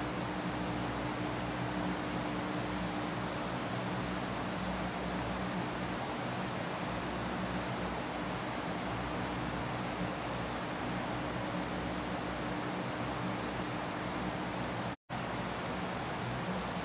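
Steady hiss with a faint low hum from electric fans running in a large hall. The sound cuts out completely for an instant about a second before the end.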